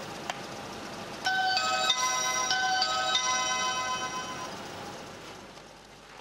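A click as the gate's doorbell button is pressed, then about a second later an electronic doorbell plays a short chime tune of several notes that rings on and fades away over a few seconds.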